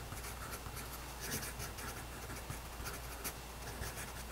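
Graphite pencil writing a couple of words on paper: faint, irregular scratching strokes.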